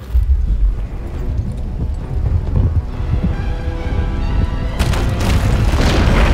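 Film sound design: a sudden deep rumbling boom that runs on low and heavy under building orchestral music, with sharper crashing hits about five seconds in, as a huge fire dragon bursts up through rock.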